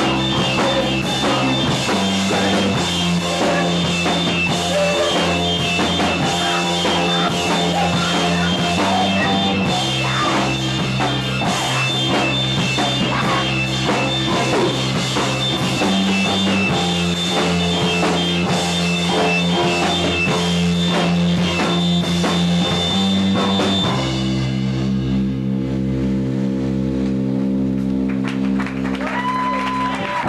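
Live rock band playing an instrumental passage on drum kit, electric bass and electric guitar, with the bass moving between notes every several seconds. About 24 s in the drumming stops and a held chord is left ringing.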